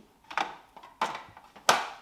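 Three sharp knocks of hands handling the plastic housing of a countertop reverse-osmosis water purifier, the loudest near the end.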